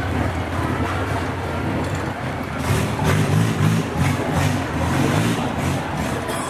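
A boat engine running steadily on the canal, its low hum swelling and pulsing about halfway through.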